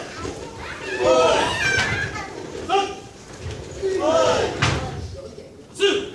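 Short, high-pitched voices calling out in a large echoing hall, with a couple of sharp thuds about two-thirds of the way through and near the end.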